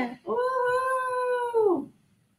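A person's voice holding one long note at a steady pitch, which dips and fades away near the end.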